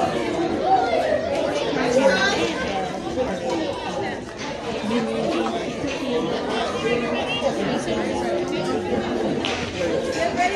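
Several people's voices overlapping throughout, talking and calling out at once, with no single speaker standing out.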